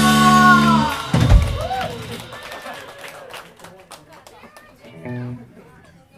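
A live rock band's final held guitar chord rings out and stops about a second in, followed by a last low thump. Then scattered clapping and shouts of cheering from the audience.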